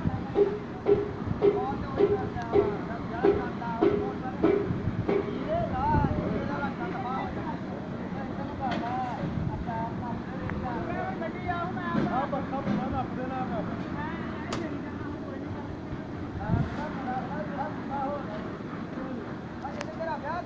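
Indistinct voices in the background over steady outdoor noise, with a run of evenly spaced low tones, about two a second, during the first five seconds.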